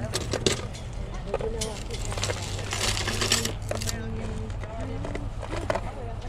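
Metal jewelry clinking and jangling as a hand rummages through a pile of chains, medallions and watches on a table, with a louder rattle about three seconds in. Faint voices in the background.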